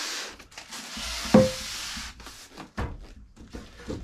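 Knife slitting the packing tape on a cardboard box, a scratchy rasping cut, with one sharp thump on the box about a second and a half in, followed by a few light knocks.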